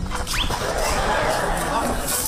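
A comic sound effect: a short rising whistle, then fast, squeaky chattering.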